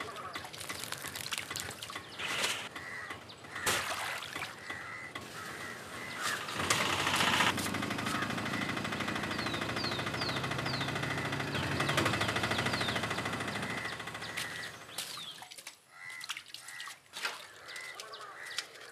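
Birds calling outdoors, with repeated duck-like calls and a few quick high chirps. In the middle a louder, steady low hum rises for several seconds, then fades.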